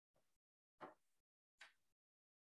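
Near silence: a few faint, brief noises, each cut off abruptly, about a second in and again just after a second and a half.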